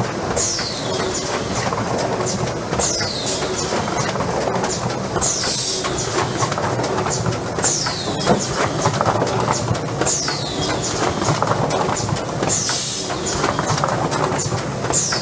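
AFM 540A case-making machine running: continuous mechanical clatter with rapid clicking. A hissing sweep falling in pitch repeats about every two and a half seconds with the machine's cycle.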